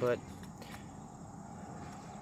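Steady outdoor background of distant road traffic noise, with a faint high insect chirr above it.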